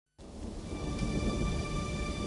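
Low rolling thunder with rain noise, swelling in from silence just after the start, with a faint held note ringing above it as the intro of a doom metal song.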